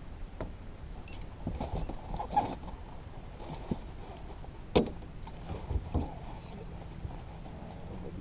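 Low, uneven rumble under scattered knocks and clicks of fishing gear and feet on a fiberglass bass boat deck, the sharpest knock about halfway through.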